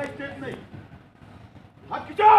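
A man shouting short, clipped drill commands: one right at the start and a louder one beginning just at the end.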